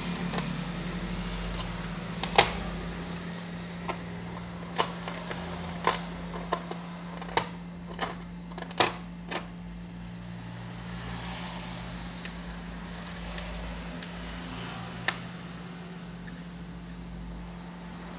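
Hot air rework gun, set to about 260 degrees, blowing with a steady low hum, while a scalpel chips at shattered iPhone back glass. The scalpel work gives a dozen or so sharp clicks and cracks, most of them in the first half.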